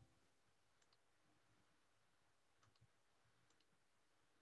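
Near silence: faint room tone with a few very faint short clicks, one pair about a second in and more near the end.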